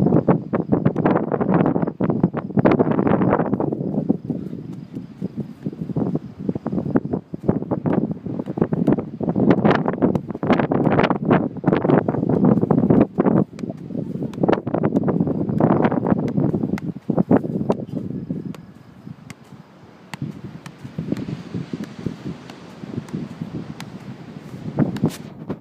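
Wind buffeting a phone's microphone on an open beach: a loud, gusting rush that rises and falls irregularly and eases near the end.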